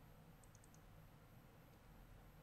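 Near silence: faint room tone with a few quick, faint computer mouse clicks about half a second in.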